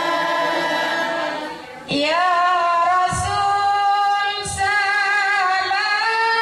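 A group of women singing in unison, holding long notes in a devotional Islamic song. The singing drops away briefly just before two seconds in, and a new phrase starts with a rising slide.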